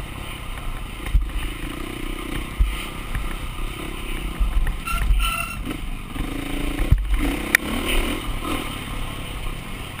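Dirt bike engine being ridden, revving up and down with the throttle, with rattles from the bike over rough ground. There are sharp knocks about a second in and again around seven seconds.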